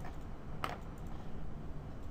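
A single sharp click at the computer about two-thirds of a second in, with a few fainter ticks, over a steady low background hum.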